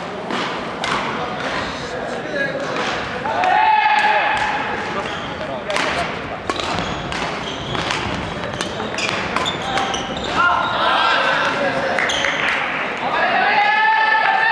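Badminton rally on a wooden gym floor: a string of sharp racket hits on the shuttlecock and footfalls on the court. People shout now and then, loudest near the end.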